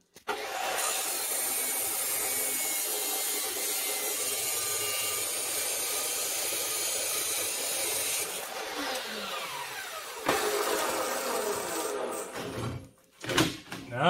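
DeWalt abrasive chop saw cutting through steel: a loud steady grinding for about eight seconds, then a falling whine as the blade spins down. Another burst of noise follows, and a couple of knocks near the end.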